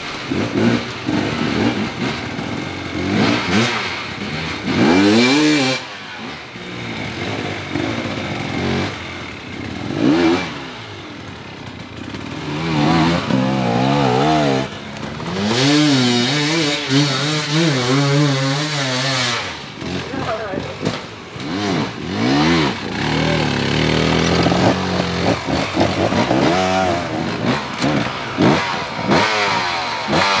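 Dirt bike engine revved up and let off again and again as the bike is worked up steep, slick ground, each rev rising and falling in pitch.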